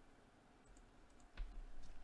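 Faint clicks of a computer mouse, with a sharper click and a low thump about one and a half seconds in.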